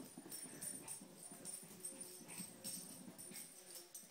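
Small dog's collar tags jingling in quick, irregular bursts, with the light patter of its paws as a Yorkshire terrier runs down carpeted stairs.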